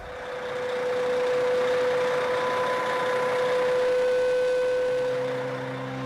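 Semi-truck tractor running, its noise swelling over the first second or so and easing off near the end, with a steady whine through most of it.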